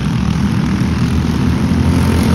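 Several racing go-kart engines running at speed around the circuit: a loud, steady drone of overlapping engine notes.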